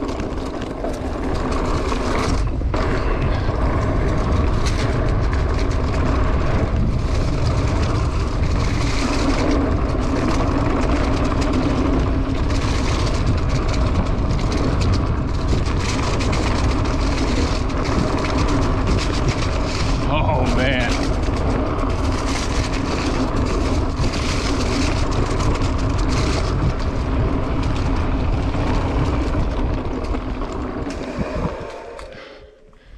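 Mountain bike descending a dirt singletrack: a steady rush of wind over the camera microphone with the rumble of knobby tyres on packed dirt and the rattle of the bike over bumps.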